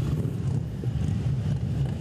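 Motorcycle engine running as the bike rides past, a steady low rumble.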